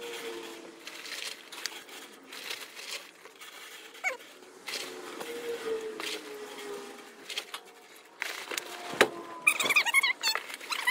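Crushed blue glass chips crunching and clinking as they are spread and handled by hand, in irregular scratchy rustles, with a sharp knock about nine seconds in.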